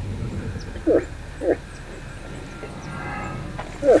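A bull moose grunting: short, deep single grunts, three of them, about a second in, half a second later, and again near the end.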